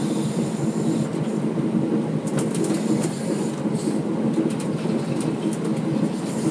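Inside the cabin of a converted 1987 Thomas Built Transit Liner bus on the move: its rear-mounted Caterpillar 3208 diesel runs with a steady low drone. A few light clicks and rattles from the body come and go from about two seconds in.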